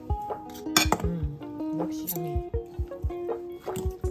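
A utensil clinking and scraping against a ceramic bowl as pasta salad is stirred and tossed, with sharp clinks, over background music with a steady beat.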